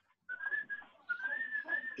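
A thin, steady high whistling tone, held level with one short break just under a second in, over faint background hiss.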